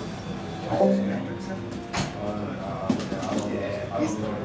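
Murmur of voices in a bar with a band's instruments sounding briefly between songs: a low note held for under a second about a second in, and a sharp click about two seconds in.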